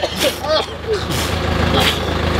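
Dump truck engine idling with a steady low hum, under brief voices and exclamations.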